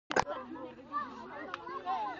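A group of children talking and calling out over one another. A couple of sharp clicks come right at the start.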